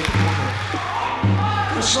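A live rock band vamps under the band introductions with long held low notes. A new note comes in just after the start and another about a second in, over a haze of crowd noise in the hall.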